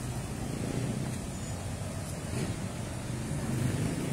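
Low, steady rumble of car engines and street traffic.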